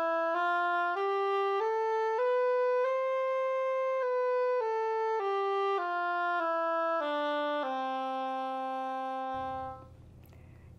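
A solo oboe playing a scale one note at a time: it climbs about an octave in even steps of roughly half a second, then steps back down and holds the low note until it stops near the end.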